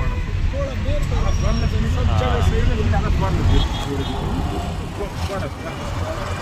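Steady low rumble of a car's engine and tyres heard from inside the cabin while driving through city traffic, with voices talking underneath.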